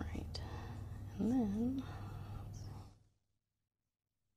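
Faint microphone room tone with a steady low hum, a few light clicks and one short murmured voice sound about a second in. The sound then cuts out to dead silence about three seconds in, as a microphone gate closes.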